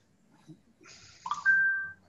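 A brief high-pitched tone that slides up and then holds steady for about half a second before cutting off, with a second, lower tone under it; it is the loudest sound here.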